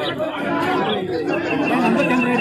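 Speech: men's voices talking, more than one voice at once.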